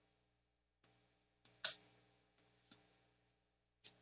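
Near silence with about six faint, scattered clicks of a computer mouse, one a little louder just past the middle.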